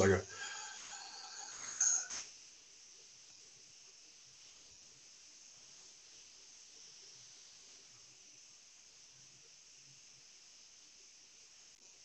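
A man's breath through the nose, a faint breathy hiss for about two seconds with one louder push near the end, cutting off sharply. Then near silence for the rest, during a slow timed exhale for a CO2-tolerance breathing test.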